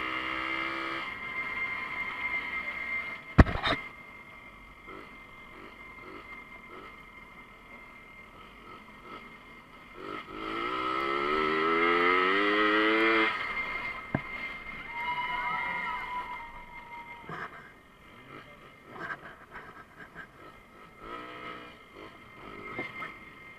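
Small moped engine running, with a sharp knock about three seconds in. About ten seconds in the engine is revved up, its note rising for about three seconds; this is the loudest part.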